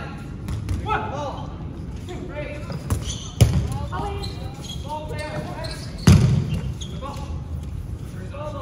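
Dodgeballs being thrown and hitting, with two loud sharp ball impacts about three and a half and six seconds in, the second the loudest, and a few lighter knocks. Players' voices call out throughout.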